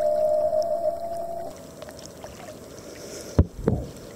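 Water heard through a camera held at and under the surface: a steady hum fades out about a second and a half in, then two dull low thumps come close together near the end as water sloshes against the camera.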